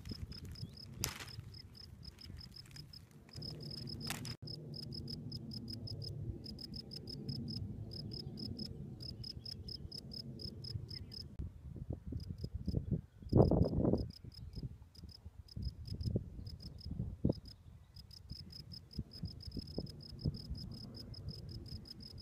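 Field cricket singing: a steady run of short, high, pulsed chirps with brief pauses between runs. Underneath is a low rumble that swells briefly about thirteen seconds in.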